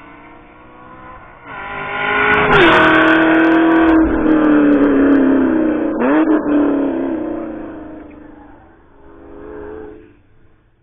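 A car's engine at speed on a race track, coming up loud and passing close by. Its note drops in pitch as it goes past, dips sharply and picks up again about six seconds in, then fades away, with a smaller swell of engine sound near the end.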